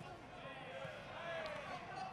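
Faint crowd of spectators and cornermen shouting, many overlapping voices with no single clear speaker.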